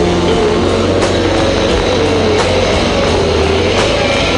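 Live rock band playing loudly, with electric guitar and keyboard sounding together in a dense, steady mix.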